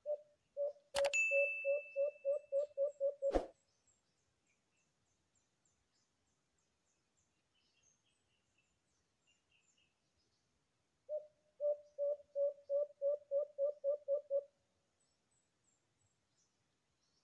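An alimokon dove calling: a quick series of low, evenly spaced cooing notes, about four a second, given twice, the second series starting about eleven seconds in. A sharp click with a short metallic ring comes about a second in, another click ends the first series, and faint high chirps run between the series.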